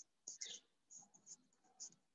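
Near silence, broken by a few faint, short rustling sounds.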